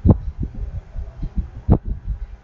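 Irregular low thuds, with a sharper thud at the very start and another near the end.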